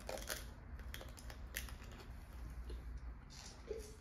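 Biting into a candy-coated pickle: the hard candy shell cracks in sharp crunches, a cluster right at the start and another single crunch about a second and a half in, with quieter chewing clicks between.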